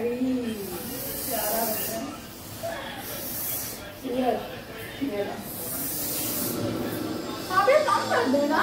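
Soft hissing swishes of a sheer dupatta being swung and rustled, in three or four separate bursts, with faint voices talking in the room.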